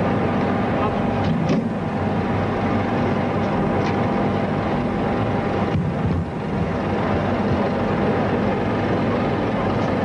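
Steady, loud machine noise, like a running engine, with a thin steady whine throughout; it dips briefly about six seconds in.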